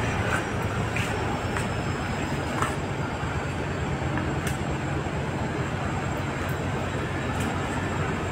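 Steady low drone of a vessel's engine, heard aboard a river launch, with a few faint clicks scattered through it.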